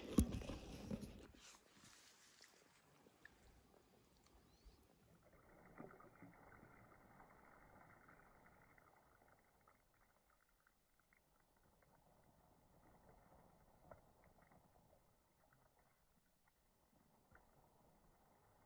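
Near silence: faint outdoor background, with a brief louder sound in the first second.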